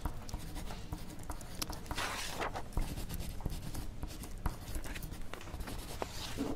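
Pencil writing on paper: scratchy strokes with small taps of the lead, a few longer strokes standing out.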